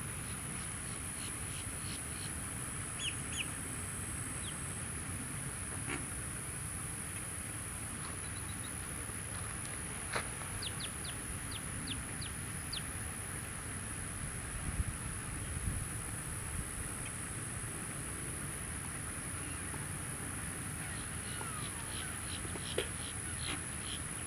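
Faint wetland ambience: a steady background hiss with a constant thin high whine, and scattered distant bird calls, including a quick run of short high chirps about halfway through.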